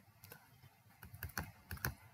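Faint clicking of computer keys: a few quiet taps after about a second, close together.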